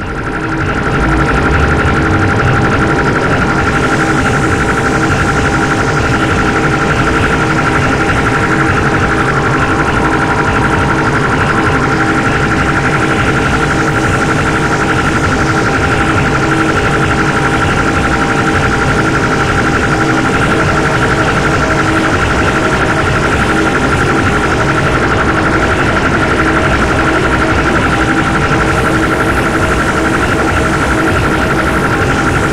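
Harsh noise music: a loud, dense, unchanging wall of distorted electronic noise with a few steady held tones running through it. It swells up quickly at the start of the track and then holds at full level without a break.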